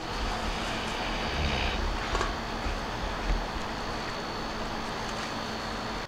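Steady outdoor background hum with low wind rumble on the microphone, and a few faint rustles and snaps as collard leaves are picked from the stalk.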